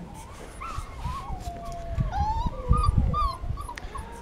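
Young Podenco puppy whimpering: a string of thin, high whines that slide up and down in pitch, one of them long and drawn out about halfway through, over low bumps of handling.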